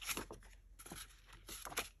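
Stiff paper cards handled by hand, slid off a stack and flipped, giving a few faint rustles and light taps.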